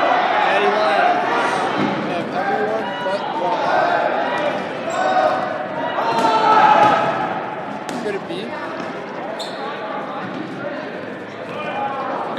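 Dodgeballs bouncing and smacking on a gym floor during play, a few sharp impacts standing out, with voices calling out across the hall.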